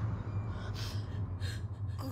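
A person gasping, with a few short breathy intakes of breath over a steady low hum.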